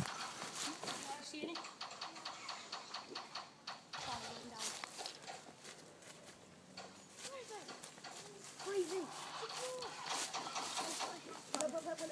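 Children's voices calling out, with footsteps and rustling through dry leaf litter and handling noise from a carried camera. The voices come in mostly in the second half.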